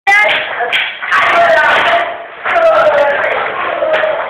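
Students' voices talking and shouting over one another, loud and close, with a few sharp knocks or slaps in between.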